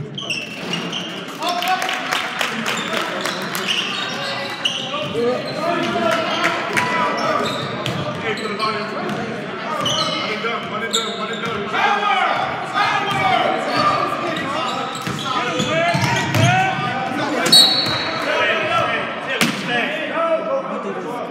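Basketball bouncing on a hardwood gym floor during play, among shouting voices of players and spectators that ring in the large hall.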